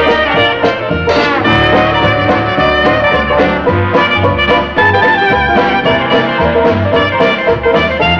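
A jazz band playing an up-tempo swing number, with horns over a steady beat, as the film's title music.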